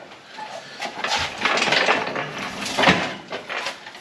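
Steel engine hoist being wheeled up to the front of a pickup: metal rattling and clattering from the hoist's frame, chain and casters, with a louder clank near three seconds.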